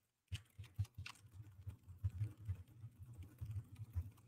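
Fast typing on a computer keyboard: a dense, steady run of key clicks that starts just after the beginning.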